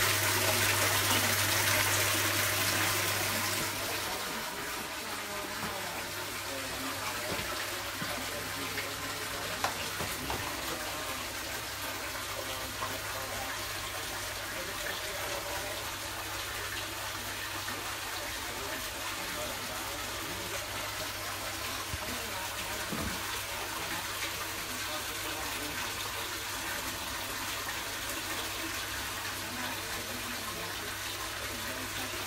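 Fresh water pouring from a hose into a large aquarium, splashing steadily onto the water surface. It is louder for the first few seconds and then settles to an even lower splash, over a steady low hum.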